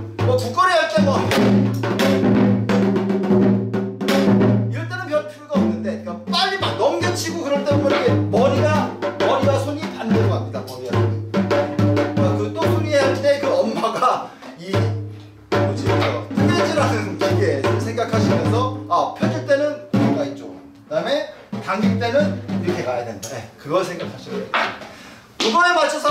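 Janggu, the Korean hourglass drum, struck in quick repeated strokes mixed with a man's voice talking or chanting along.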